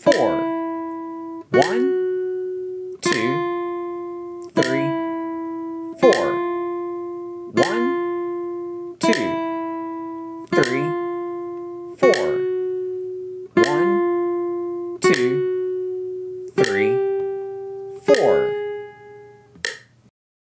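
Classical nylon-string guitar playing a slow single-note exercise at about 40 beats per minute: one plucked note every second and a half, each left to ring, the notes staying close in pitch with some repeated. The last note rings out and fades near the end.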